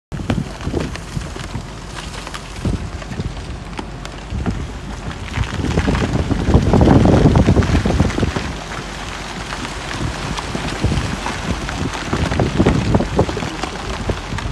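Broken pack ice crunching and crackling against a ship's hull as the ship pushes through it, with a louder, deeper grinding stretch about six seconds in that lasts a couple of seconds.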